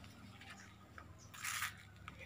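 Leaves rustling briefly close to the microphone, a short soft crunch about one and a half seconds in, over a faint background.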